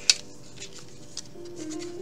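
Soft background music with steady tones, over hands handling a cardboard tarot deck box: one sharp click just after the start and a couple of faint taps later.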